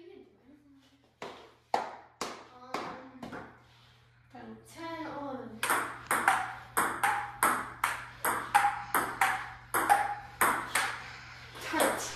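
Table tennis rally: the ball clicking off the paddles and pinging on the Joola table, a few scattered hits early and then a fast, even exchange of about three hits a second from about halfway in.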